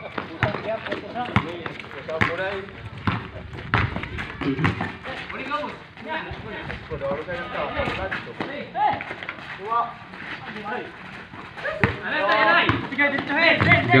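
Voices of players and onlookers talking and calling out over a basketball game, with a basketball bouncing on a concrete court and scattered short knocks of the ball and footsteps. The voices grow louder near the end.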